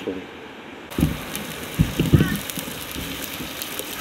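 Spam frying and potatoes boiling side by side in a non-stick frying pan: steady sizzling with fine crackles, starting abruptly about a second in. A few low thumps come around two seconds in.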